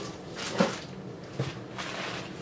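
Products and packaging being handled during an unboxing: two short knocks about a second apart, the first the louder.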